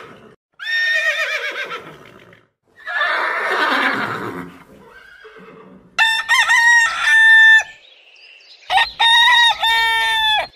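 A horse whinnies with a wavering call, then gives a rougher, noisier call. A rooster then crows twice, about six and nine seconds in, each crow held for about a second and a half.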